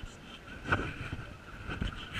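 Knocks and rubbing on a body-worn action camera as the wearer moves, over a steady background murmur; the sharpest knock comes about three-quarters of a second in.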